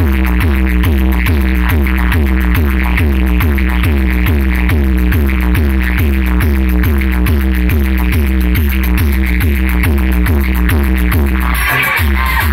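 Loud electronic dance music with a heavy, steady bass beat and a repeating synth line, played through a large DJ roadshow sound system. The bass drops out briefly near the end, then comes back in.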